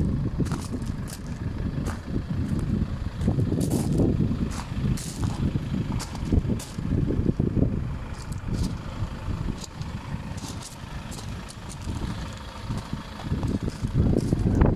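Wind buffeting the microphone in irregular gusts, with scattered light clicks and crunches as the camera is carried around on gravel.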